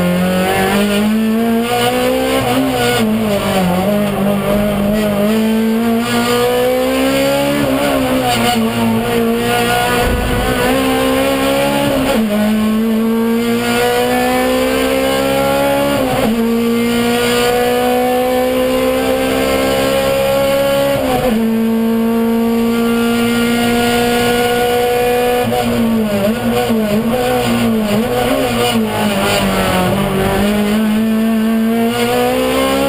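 Race car engine heard from inside the cabin at full throttle, its pitch climbing steadily in each gear and dropping sharply at each upshift, with wavering dips and rises where it slows and shifts down for corners.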